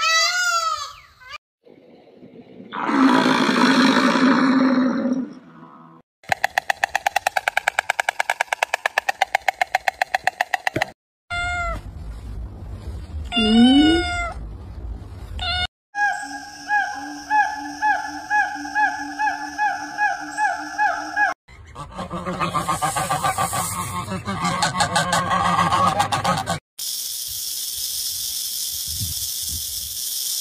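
A run of short animal-sound clips cut one after another. It opens with a peacock's repeated calls, which stop about a second in, and is followed by several different unidentified calls and noises, each ending abruptly.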